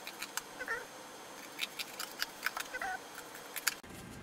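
Scissors snipping through a paper printout, a run of short, irregular snips, with a couple of faint squeaks in between.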